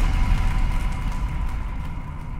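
A deep, low rumble that came in suddenly and now slowly fades, with a higher hiss above it dying away.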